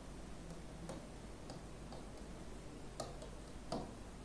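Faint, irregular clicks and taps of a pen tip striking the board as a word is written by hand, louder about three seconds in and again near the end, over low room tone.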